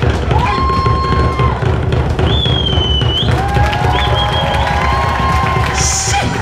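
Drums beaten fast and continuously, with the crowd cheering over them and several long, held whoops and yells.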